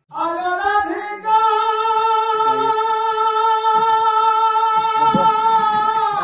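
A Sambalpuri folk singer's voice, unaccompanied, sings one long high note: it climbs in pitch over the first second, then is held steady for about five seconds.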